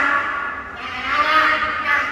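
A man's voice on stage, amplified through the hall's sound system, speaking in pitched, held-out tones that echo in the large room.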